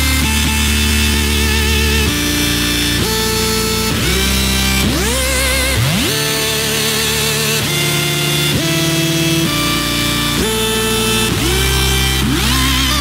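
Electronic dance music from a trance/EDM DJ mix: synthesizer notes over a heavy bass line, several of them swooping up in pitch into held notes.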